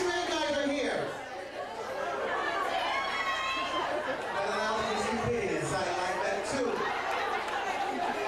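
Indistinct talking and chatter of voices in a large room.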